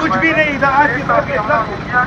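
Loud men's voices shouting over one another during a scuffle.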